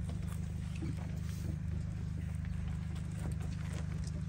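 A steady low hum with faint, scattered taps and footsteps.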